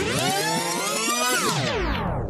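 An electronic synth sweep: a dense stack of tones that rises in pitch, holds, and slides back down near the end.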